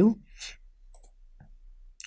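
A few faint, scattered computer mouse clicks.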